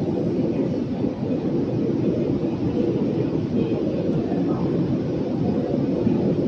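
Deutsche Bahn ICE 4 high-speed train pulling slowly out of the station: a steady low rumble of its wheels and traction gear.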